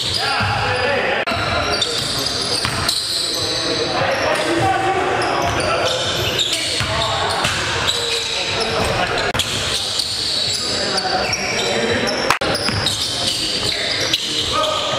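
Live gym sound of a basketball game: a ball bouncing, sneakers squeaking on the hardwood, and players' voices echoing in a large hall, broken by a few abrupt cuts.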